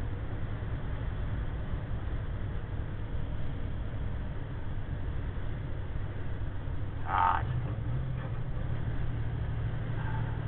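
Steady low drone of a 2009 diesel truck's engine and road noise heard inside the cab while cruising at highway speed. A brief higher-pitched sound cuts in about seven seconds in.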